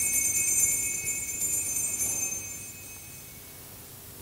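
Altar bells (sanctus bells) rung at the elevation of the chalice during the consecration, marking the moment the chalice is raised. The bells give a shaken, jingling ring that is already going and dies away about two and a half seconds in.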